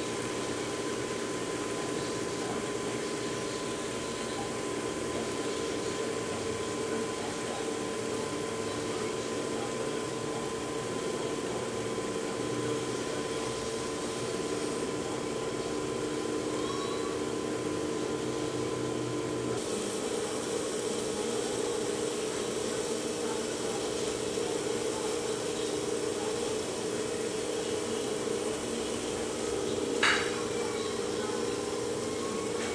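Electric potter's wheel running at a steady speed, a continuous motor hum. The hum shifts slightly about two-thirds of the way through, and a short knock comes at the very end.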